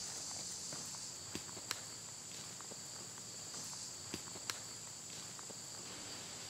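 Footsteps walking across grass, with a few short sharp clicks, over a steady high-pitched chorus of insects.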